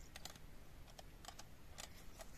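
Faint, irregular light clicks, about eight in two seconds, over near silence.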